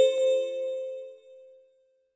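The ringing tail of a short bell-like musical chime: the last note of a rising run rings out and fades away, dying out about a second and a half in.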